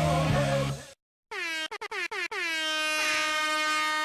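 Music cuts off about a second in, and after a brief gap a buzzy, horn-like electronic tone swoops down in pitch, stutters a few times, then holds one steady note.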